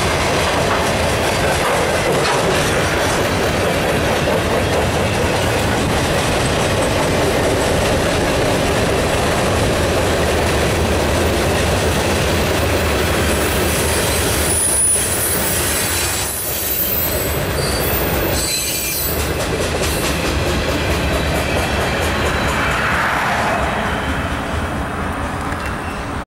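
Freight cars of a mixed freight train rolling past, steel wheels running over the rail in a steady rumble, with brief high wheel squeals about halfway through. The noise eases off near the end as the last car goes by.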